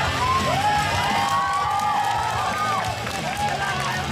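Karaoke performance: a voice over the PA, holding long notes that slide up and down, over the backing track and crowd noise in a large hall.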